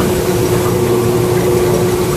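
Ice cream batch freezer running: a steady mechanical hum with one steady tone.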